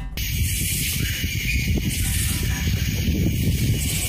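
Steady hiss with an uneven low rumble from a camera microphone recording outdoors at night; no distinct call or scream stands out.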